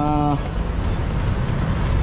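A steady low rumble of road traffic noise, like a passing vehicle, after a drawn-out word of speech that ends just after the start.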